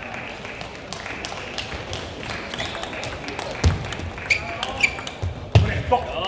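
Sports-hall ambience between table tennis points: a low murmur of voices with a couple of dull thumps, about three and a half seconds in and again near the end, and a voice near the end. No ball is being played.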